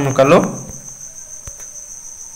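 Crickets trilling steadily in the background, a thin high-pitched tone that carries on unbroken once a voice stops about half a second in. A single faint click sounds near the middle.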